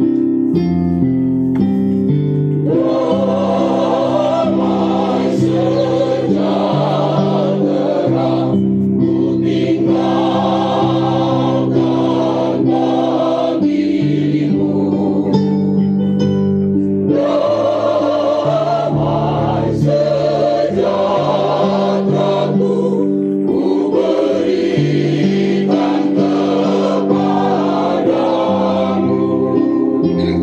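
Mixed choir of men and women singing a church song in Indonesian, accompanied by an electronic keyboard. The keyboard plays alone at first and the voices come in about three seconds in, singing in phrases with short breaks between them.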